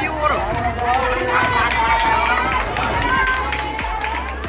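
A small group of people talking and calling out over one another, several voices overlapping.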